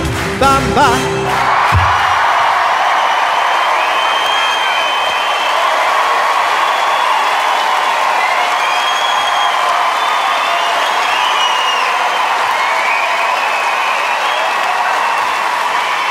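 Electric organ and a man's singing voice end about two seconds in, then a large theatre audience applauds and cheers, with whoops.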